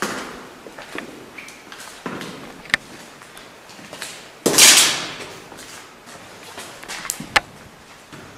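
Scattered clicks and knocks from people moving about, with sharp clicks near the three-second mark and near the end, and a loud half-second scrape or rustle about halfway through.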